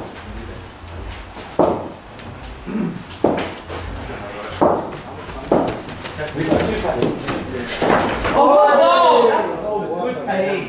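Sharp knocks of hard cricket balls being struck and landing in indoor practice nets, several single knocks at uneven intervals a second or two apart.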